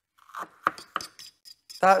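Tableware clinking: four or five small, sharp taps, like a utensil against a dish or glass, over about a second and a half.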